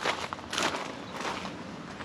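Footsteps crunching on pea gravel as a person walks a few paces.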